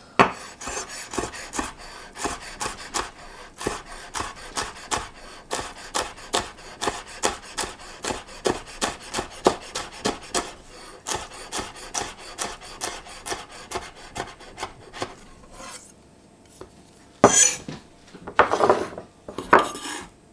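Chef's knife finely dicing a red chilli on a wooden cutting board: a quick, steady run of blade strikes on the wood, about three or four a second. Near the end come a couple of louder scrapes as the blade sweeps the diced chilli together across the board.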